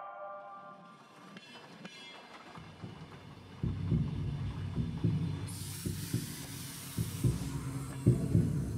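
A closing film soundtrack: chiming mallet-percussion music fades out, then gives way about three and a half seconds in to a low throbbing rumble with scattered soft knocks. A high hiss rises over it for a couple of seconds near the middle.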